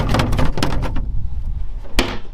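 Several light knocks and rattles of hard plastic, with a sharper knock right at the end, over a steady low wind rumble on the microphone.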